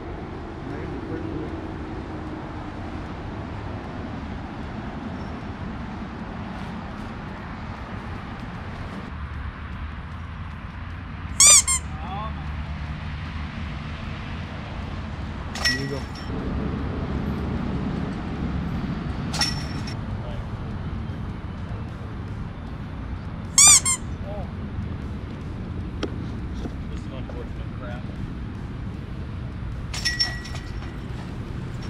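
A steady open-air background is broken twice by a short, loud, high-pitched squeal, about eleven seconds apart. A couple of fainter sharp clinks fall between them.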